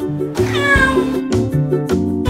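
A cat meows once, a single call falling in pitch about half a second in, over steady background music.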